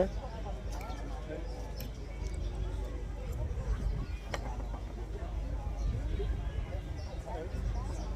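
Outdoor café background: faint chatter of other voices over a low steady rumble, with a few light clicks of cutlery on a plate, the sharpest about four seconds in.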